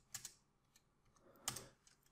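A few faint computer keyboard keystrokes, one just after the start and another about a second and a half in.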